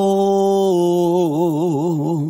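A male singer holds one long note in a Khmer song. Just under a second in, the note begins to waver in an even vibrato.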